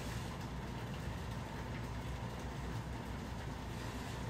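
Handheld garment steamer running steadily, a continuous hiss and low hum as it steams a pair of linen pants.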